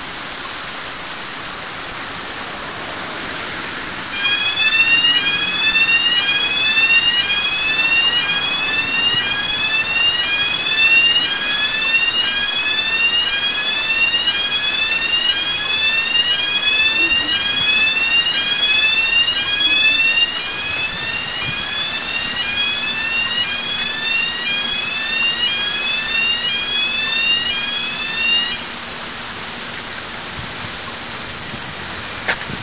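Electronic audible warning of a swing-bridge road crossing, a quickly repeating rising tone, sounds while the barriers come down and stops shortly before the end. Heavy rain hisses throughout.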